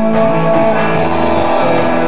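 A live band playing an instrumental passage between vocal lines, with electric guitar to the fore over keyboard and drums.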